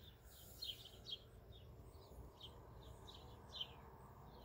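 Faint bird chirping: a run of short, high, falling chirps, about three a second, over quiet outdoor background noise.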